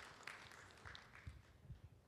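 Near silence: faint room noise in a conference hall, with a few soft low knocks.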